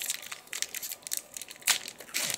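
Foil booster-pack wrapper crinkling and crackling as it is handled, in irregular small crackles with one louder crackle near the end.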